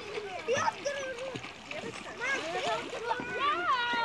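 Children calling and shouting while swimming and splashing in a pool, with water splashing under the voices. One long, high cry falls in pitch near the end.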